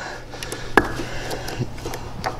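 A single sharp click about a second in, from a push-button switch on the storage box's lid panel being pressed, with a few faint ticks of fingers on the panel.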